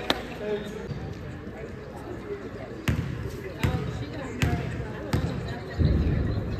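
A basketball bounced on a hardwood gym floor: a single bounce at the start, then five steady bounces about three-quarters of a second apart through the second half.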